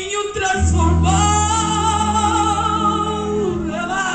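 Gospel song with a woman singing lead through a microphone: she holds one long note with vibrato over a band's steady bass and keyboard chords.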